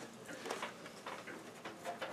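Quiet room with a few faint small clicks and rustles from hands working at a bench power supply and test wiring.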